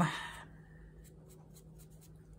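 Faint, light scratching of a small brush working ink onto a fussy-cut cardstock flower, a few soft strokes against the paper.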